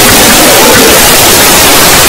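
Loud, steady static hiss that fills the whole sound at a flat level.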